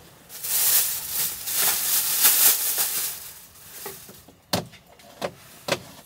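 Rustling and crinkling of packaging handled at a table for about three seconds, then three sharp knocks about half a second apart as things are set down on the tabletop.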